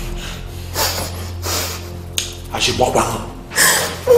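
A man breathing hard in gasps and grunts, in separate breaths about every 0.7 s, with short strained voice sounds in the second half, over a low steady hum.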